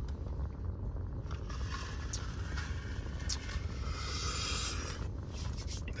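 Steady low rumble inside a car's cabin, with light rustling and a few soft clicks.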